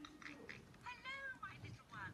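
High-pitched cartoon character voices speaking, played through a TV speaker.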